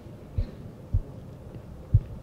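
Three low, dull thumps, the last the loudest, over a steady hum.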